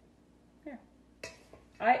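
Spoons clinking lightly as muffin batter is scooped and dropped into silicone cups in a muffin tin, with one sharp clink a little past the middle. A single spoken word near the end is the loudest sound.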